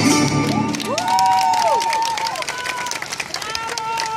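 Audience clapping and cheering at the end of a folk-dance number, just after the music stops. Over the clapping, a voice calls out twice in long, drawn-out shouts that rise and fall in pitch.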